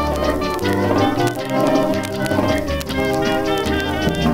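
Cuban rumba played by a dance band, held wavering notes over steady percussion, reproduced from a 78 rpm record.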